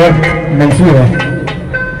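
Live Egyptian folk music from a simsimiyya band played loud through stage loudspeakers, with a voice sliding in and out over it.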